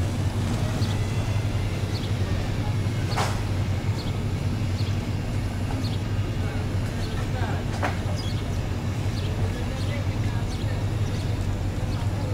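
Steady low drone of diesel construction machinery, with faint short high chirps about once a second and two sharp clicks, about three and eight seconds in.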